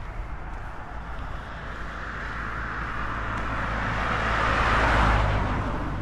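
A car driving past on the road, its tyre and engine noise swelling to a peak about five seconds in, then fading.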